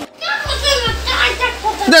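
Children's voices at play, with music in the background.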